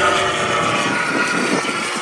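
Radio-controlled P-51 Mustang model aircraft's motor droning steadily in flight overhead, its pitch falling slightly.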